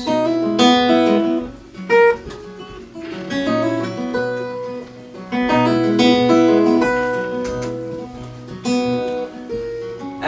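Fingerpicked acoustic guitar with a capo, playing an instrumental passage of plucked, ringing notes that winds down near the end.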